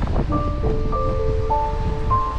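Low, steady rumble of wind on the microphone of a moving e-bike, joined about a third of a second in by music of held notes that change pitch every half second or so.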